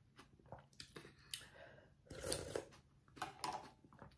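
A person eating noodle soup close to the microphone: chewing and mouth noises in a few short bursts, with a brief sharp click about a second in.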